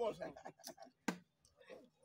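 Plastic draughts pieces clicking on a wooden board: a couple of light taps, then one sharp click about a second in.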